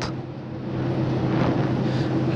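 Steady low electrical hum from an energized low-voltage DOL starter panel, with an even rushing background noise that swells up about half a second in.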